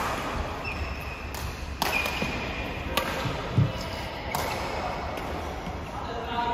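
Badminton rackets striking a shuttlecock during a rally: three sharp hits, roughly a second to a second and a half apart, with brief shoe squeaks on the court floor. A low thump about halfway through is the loudest sound.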